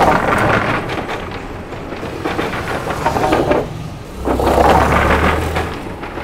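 Vehicles driving over the wooden plank deck of a suspension bridge: a loud rattling rumble of the boards under the wheels, swelling twice, with a low engine hum beneath.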